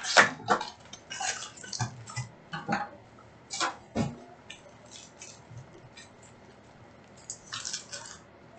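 Plastic wrapping and cardboard of a hobby box of Panini Select baseball card packs being torn open, then the foil packs rustling as they are pulled out and handled: irregular crinkles and crackles, busy in the first few seconds, sparse after, with a short flurry near the end.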